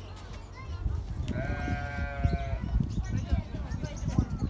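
A goat bleating once, a long call lasting about a second, starting a little over a second in.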